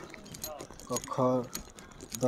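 A man's voice speaks a short phrase about a second in, with light clicking and jingling throughout.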